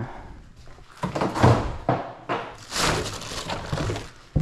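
Plastic rustling and crinkling, in several bursts, as a black garbage bag of toys and a bundle of balloons and plastic ribbon are handled and rummaged through, with a soft thud or two.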